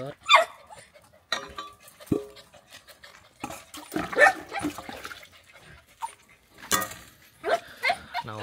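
A dog giving several short barks and whines, excited as its food is brought to the bowl.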